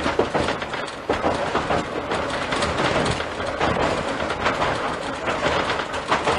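Kambara Railway Moha 41 electric railcar running along the track, heard from inside the front of the car: a steady running noise with frequent rattles and knocks from the wheels and car body.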